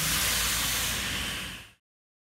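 Steady hiss over a low rumble inside a running subway car, cutting off abruptly near the end.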